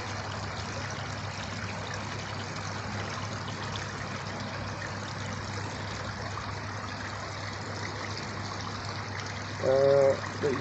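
Pond water trickling steadily, with a low even hum underneath.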